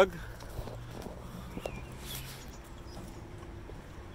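A low steady hum with a few faint light clicks; the hum fades out after about two and a half seconds and a weaker, higher tone follows.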